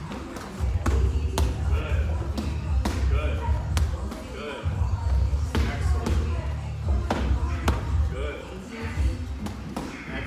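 Boxing gloves smacking on gloves and headgear in sharp, irregular hits during sparring, over gym music with a heavy bass.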